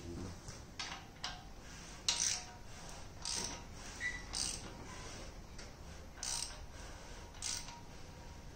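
A hand ratchet on the crankshaft bolt of an LS3 V8 short block, worked in strokes to turn the crank over by hand with the timing chain and cam gear fitted. It gives about seven short bursts of ratchet clicks at irregular spacing.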